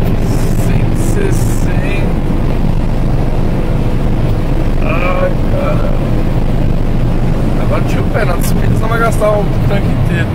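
Inside the cabin of a 2019 Ford Ka with a 1.0 three-cylinder engine, held flat out at about 160 km/h on a climb: a loud, steady engine drone mixed with wind and tyre noise.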